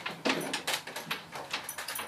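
Mahjong tiles clicking and clacking against one another as they are handled on the table, in a quick irregular run of small clicks.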